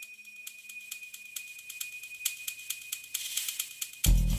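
An edited-in transition sound effect: a steady high tone under a run of sharp, irregular ticks and rattles that grows louder toward the end.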